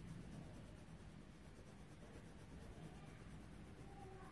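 Faint scratching of a coloured pencil on paper as a drawing is coloured in.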